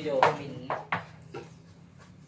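A loud short exclamation from a man, then two sharp clacks less than a second apart and a fainter one after, from hard pieces on a wooden cue-and-disc game table.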